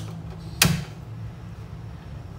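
A single sharp clack about half a second in as the empty metal frying pan is handled on the stove to be heated, over a steady low hum.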